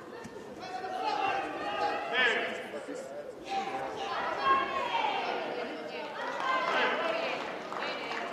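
Several voices calling out over background chatter from spectators and people around the mat.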